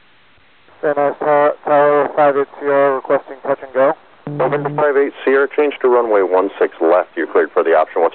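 Air traffic control radio call: a man's voice over the narrow-band VHF tower frequency, starting about a second in after faint hiss and running on to the end with short breaks.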